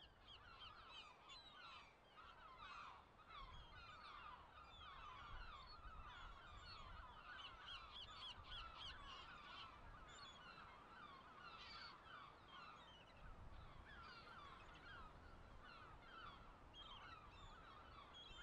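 Faint, busy chorus of many short overlapping bird calls from a flock, running throughout, with a low rumble of wind underneath.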